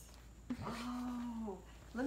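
A person's long, drawn-out "oooh", held on one low pitch for about a second and dipping at the end, starting about half a second in.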